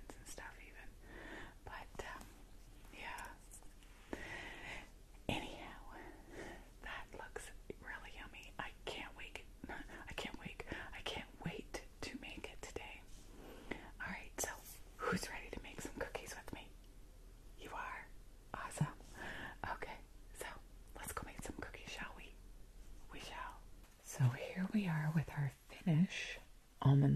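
A woman whispering, turning to soft voiced speech near the end.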